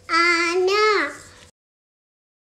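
A young child's voice holding a drawn-out, sung-sounding call in two steady parts for about a second, falling in pitch at the end. The sound then cuts off abruptly.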